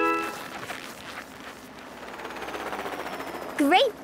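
Cartoon helicopter-rotor sound effect, a rapid chopping that grows steadily louder, with a short cartoon voice cutting in near the end.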